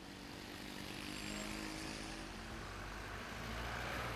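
Street traffic: motor vehicles, including a motorcycle, passing on the road, engine noise growing a little louder after the first second.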